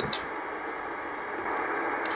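Steady receiver hiss from an Icom IC-R8500 in CW mode, tuned to 28.200 MHz on the 10-metre band, with no Morse beacon tone heard. The hiss grows a little louder about one and a half seconds in.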